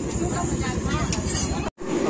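Faint background voices over a steady low rumble of street noise, broken off abruptly near the end by a sudden gap of silence.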